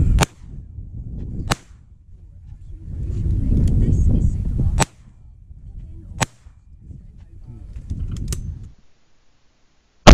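Several sharp shotgun shots, some in quick pairs about a second and a half apart as both barrels are fired, with gusts of wind on the microphone between them.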